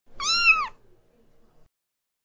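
A single cat meow, about half a second long, rising then falling in pitch.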